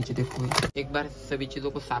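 Mostly a man talking, with a brief scratchy noise about half a second in.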